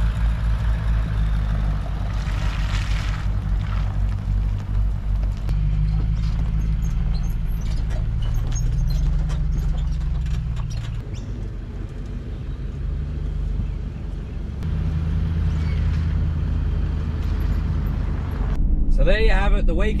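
A four-wheel drive's engine running as it tows a caravan away, its note shifting up and down several times as the revs change.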